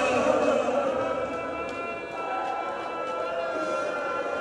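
A voice chanting a slow melody in long, drawn-out held notes, a little softer from about halfway through.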